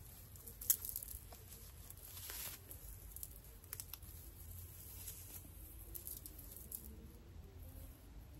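Faint rustling and crackling of fingers working through twisted natural hair, untwisting and separating the twists, with a few sharp clicks, the loudest just under a second in.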